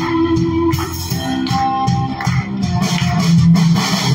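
A live worship band playing an instrumental passage: guitar and bass with keyboard over a steady drum beat.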